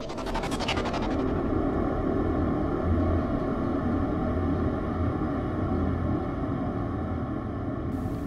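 A dark, low rumbling drone of sound design, opening with about a second of rapid, glitchy crackle.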